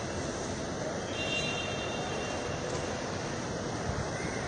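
Steady outdoor traffic noise, with a brief high-pitched tone lasting about a second, starting about a second in.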